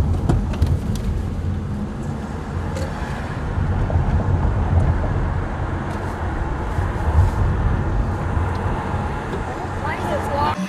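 Road noise inside a moving car's cabin: a steady low rumble of tyres and engine while driving.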